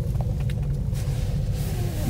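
Steady low rumble inside a moving gondola cabin with its window open a little: wind and travel noise, with a few faint clicks.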